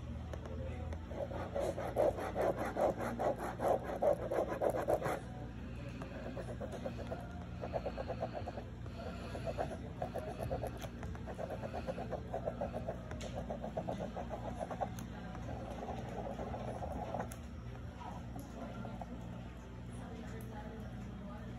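Ballpoint pen scratching back and forth on a cardboard box in quick strokes, crossing out printed words and writing over them. It comes in spells: the longest and loudest from about two to five seconds in, then shorter bursts of scribbling later on.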